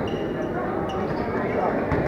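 A handball bouncing on the hard court floor, a couple of sharp knocks amid the shouting voices of players and spectators, echoing in a large indoor sports hall.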